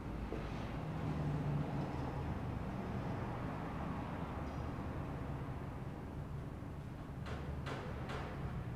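Steady low rumble of background room noise, with two short rushes of noise close together near the end.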